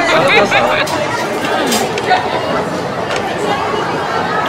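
Several people talking at once: steady indoor chatter of voices.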